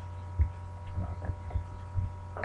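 Steady low electrical hum with a few dull knocks, the loudest about half a second in.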